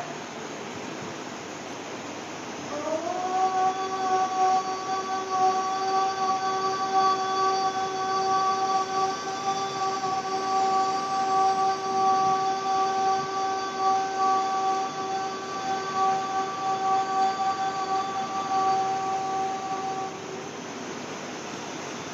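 A woman's voice holding one long, steady chanted note during a yoga breathing practice. It begins about three seconds in with a short slide up in pitch, holds level for about seventeen seconds, and stops shortly before the end.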